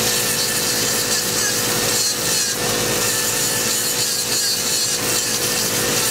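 Podiatry nail drill with water spray grinding down a thick, lifted toenail: a steady motor whine under a continuous gritty filing noise.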